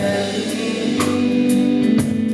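A live MPB band plays: a male voice sings held notes over electric guitar, bass, keyboards and drums, with cymbal strikes about half a second and a second in.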